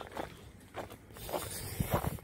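Footsteps on snow-covered ground, a few soft crunching steps about half a second apart.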